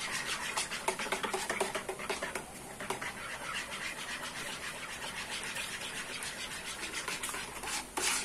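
Wire whisk stirring in a plastic basin, dissolving chocolate milkshake powder into water, with a steady run of rapid scraping strokes against the bowl.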